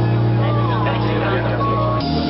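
Live funk band with a low bass note held steady through, under a singer's voice; the note changes right at the start and the end.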